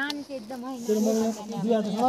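A person's voice, speaking, with no other clear sound above it.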